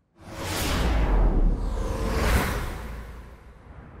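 Scene-transition whoosh sound effect: a sudden swish with a deep rumble underneath, a second swish about two seconds later, then fading away.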